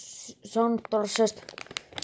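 Food packaging crinkling and rustling as it is handled, with a few sharp clicks.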